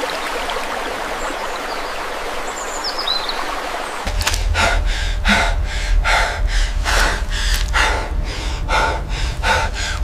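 A forest stream running steadily, with a few faint bird chirps about three seconds in. About four seconds in it gives way to a man's quick, frightened panting, about two breaths a second, over a low rumble.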